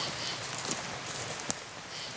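Footsteps through weeds and brush, with leaves and twigs rustling, a few soft ticks and one sharp click about one and a half seconds in.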